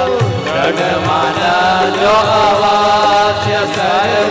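A man singing a Hindu devotional kirtan, his voice gliding between held notes over a steady low drone, with light, regular percussion ticks.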